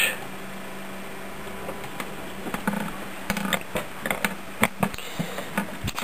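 Steady hum of a running desktop PC's cooling fans, with a scatter of small clicks and knocks from about two and a half seconds in.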